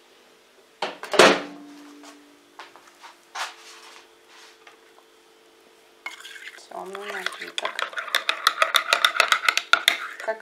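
A single clank with a ringing tone about a second in, then from about six seconds a metal spoon stirring cocoa in a ceramic mug, clinking rapidly and regularly against its sides.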